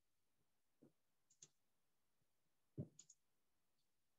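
A handful of faint computer mouse clicks over near silence, some in quick pairs, while a file is being searched for.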